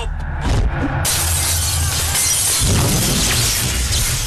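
Film fight-scene crash sound effect: a loud, dense crash begins about a second in and carries on for about three seconds.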